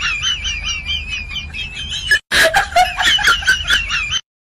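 Bird-like chirping and clucking: a wavering high warble over a quick run of clicks. It breaks off briefly about two seconds in and starts over.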